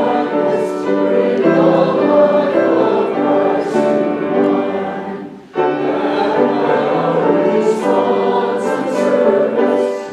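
Congregation singing a hymn together, with a short break between phrases about five and a half seconds in.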